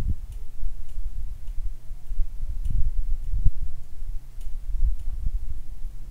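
Quiet painting sounds: a low steady rumble with a few soft thumps and faint, irregular ticks as a round brush works acrylic paint onto a stretched canvas.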